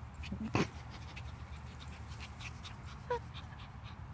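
Small dogs at play: one gives a short bark about half a second in, the loudest sound, and a brief yip just after three seconds.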